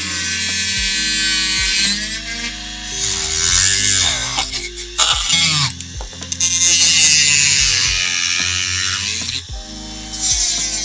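Rotary tool with a small cut-off wheel cutting through a model car's black plastic chassis. Its high whine sags in pitch each time the wheel bites into the plastic and rises again as it eases off, several times over. Background music with a steady bass line plays underneath.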